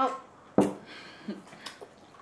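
A child eating noodles with chopsticks: a sharp knock about half a second in, then soft slurping and a few small clicks.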